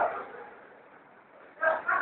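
A voice in a live rap-battle room trails off into a lull of faint background noise, then a short call breaks out about a second and a half in.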